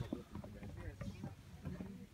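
Faint, low voices over a steady low rumble, typical of outdoor wind noise on the microphone.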